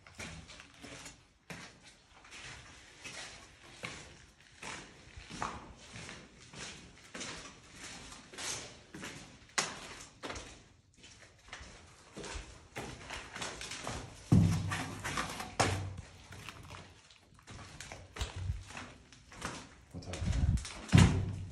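Footsteps scuffing and knocking irregularly over a debris-strewn hard floor in a small, echoing room, with a heavier thud about two-thirds of the way through.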